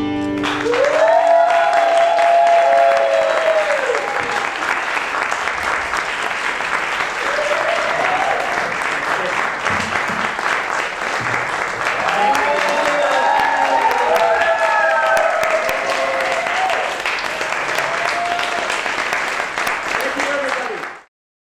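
Audience applauding and cheering at the end of a song, with rising and falling whoops in the first few seconds and again past the middle. The acoustic guitars' last chord cuts off just as the applause begins.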